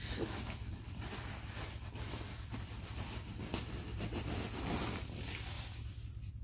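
Shredded mulch pouring out of a woven polypropylene sack onto a compost pile: a steady rustling patter of many small pieces landing, which stops near the end.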